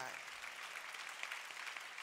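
Audience applauding steadily, a dense even clatter of many hands clapping.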